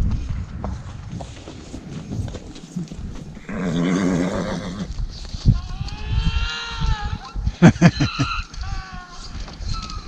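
Horses neighing: a low, buzzy call about three and a half seconds in, then a higher whinny whose pitch rises and falls, and shorter calls near the end, over hoof steps on packed snow.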